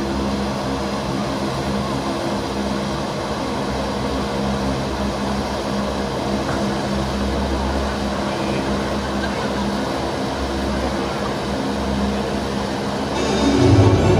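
Stage wind machine, a large fan, blowing steadily to make a strong wind for a bird to fly in. Background music plays underneath and gets louder near the end.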